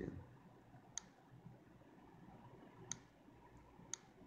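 Three faint, sharp clicks over near-silent room tone: a finger tapping on a phone touchscreen, about a second in, near three seconds and just before the end.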